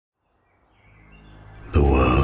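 Film soundtrack sound design: a faint ambience with a few thin high chirps fades in out of silence, then shortly before the end a deep low rumble with hiss starts suddenly and loudly.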